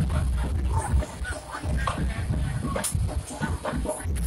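Outdoor street-festival background: music playing amid crowd noise, with a heavy, uneven low rumble.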